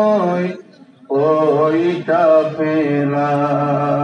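A man chanting an Islamic devotional line in a long, held, melodic voice. The first phrase ends about half a second in, and after a short pause a second long phrase begins.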